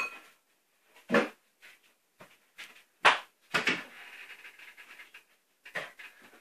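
A child's short, breathy gasps and pants, a few separate bursts seconds apart, in disgust at a foul-tasting mixture of cheese, coke and yoghurt.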